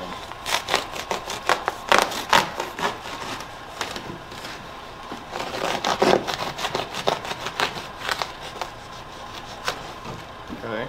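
A knife cutting through a section of pipe insulation along a miter line: a run of irregular crackling, crunching strokes in two spells, the first starting about half a second in and the second in the latter half, with one last snap near the end.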